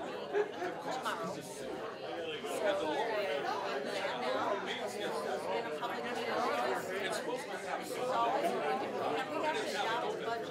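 Indistinct chatter of several people talking at once, with overlapping voices and no one speaker standing out.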